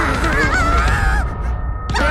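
Cartoon goose-like honking: wavering, warbling honks that bend up and down, ending in one long held note, over a low rumble.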